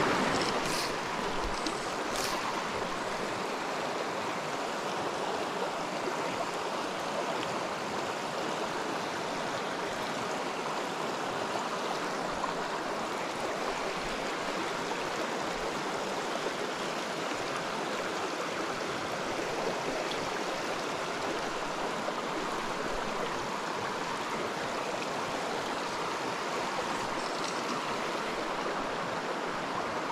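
Shallow mountain creek running over rocks: a steady, even rush of riffling water.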